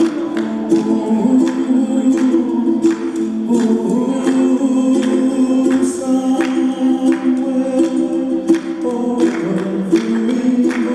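A song with singing voices and a steady beat, played for a slow dance.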